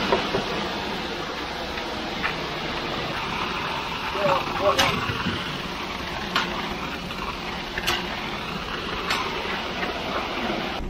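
Concrete mixer truck running steadily while concrete is discharged down its chute, with a handful of sharp knocks spread through.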